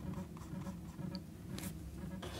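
Paintbrush bristles dragging acrylic paint across canvas: a few faint, short scratchy strokes.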